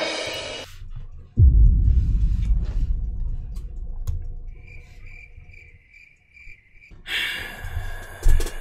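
A sudden deep boom about a second and a half in that dies away over a few seconds, followed near the end by a short run of evenly spaced, cricket-like high chirps, an edited-in sound effect.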